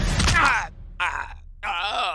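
A man's pained groans from an animated character who has dropped out of a tree and hurt his ankle. There is one falling groan about half a second in, then two shorter grunts. Background music cuts off just before the first groan.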